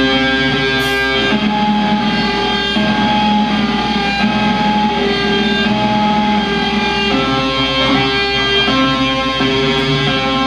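Live metalcore band's electric guitars playing held, ringing chords that change every second or two, with no vocals.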